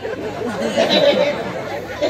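Voices talking indistinctly, chatter with no clear words.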